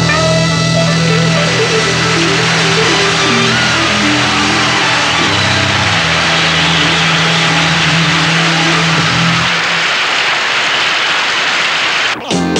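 Studio audience applauding and cheering loudly over a rock band with horns, which holds its final chord until it stops about ten seconds in.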